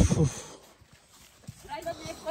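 Hikers' voices and footsteps on a dirt forest trail. A brief loud vocal sound comes at the very start, then a single footstep tap about one and a half seconds in, then people talking near the end.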